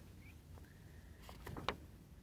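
Faint handling of a folded paper album insert, with a few light paper ticks and clicks in the second half over a low room hum.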